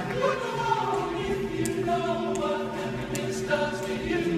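Men's barbershop chorus singing a cappella in close four-part harmony, holding and shifting full chords.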